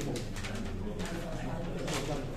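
Low murmur of voices in a dining room, with paper rustling as a plaque is handled out of its wrapping.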